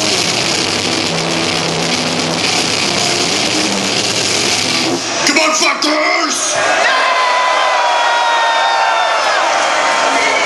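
Live heavy metal band playing fast with distorted guitars and drums, stopping about halfway through after a few last hits. A crowd then cheers and yells.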